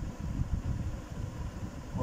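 Steady, fluttering low background rumble, with a faint thin tone above it.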